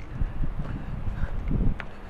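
Wind rumbling on the camera's microphone outdoors, with a brief stronger gust about a second and a half in and a faint tick near the end.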